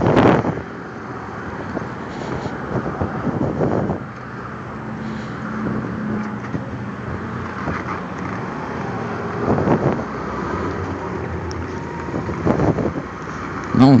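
Motorcycle engine running as it rides slowly, heard with wind rushing over the helmet-mounted microphone and road traffic alongside. It is a steady noise that swells louder a few times.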